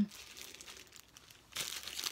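Clear plastic packaging bag crinkling as it is handled, a short crackly rustle that starts about three-quarters of the way in after a quiet moment.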